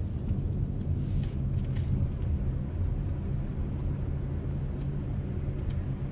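Car driving, heard from inside the cabin: a steady low rumble of engine and tyre noise on the road, with a few faint light clicks.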